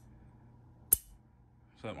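A single sharp click about halfway through, over a faint low hum; a man's voice begins near the end.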